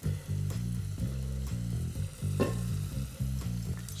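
Beef and onions sizzling as they sauté in olive oil in a pot, with a few light knocks, over background music with a low bass line that steps from note to note.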